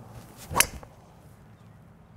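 TaylorMade Stealth 2 Plus carbon-faced driver striking a golf ball off the tee: a brief swoosh of the swing leads into a single sharp crack at impact about half a second in.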